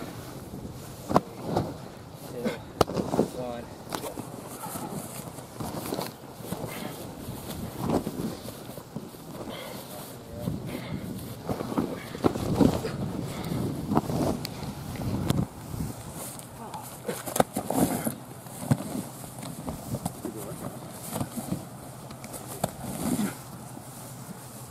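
Indistinct voices of rugby players calling out across an open field, with occasional short knocks and thumps from contact work.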